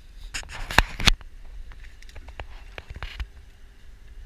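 A hooked striped bass splashing at the surface beside an aluminum boat. Two loud sharp knocks come about a second in, followed by scattered lighter knocks and clicks.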